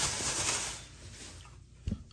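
Plastic bag rustling and crinkling as it is handled, dying away after about a second, then a single soft thump near the end.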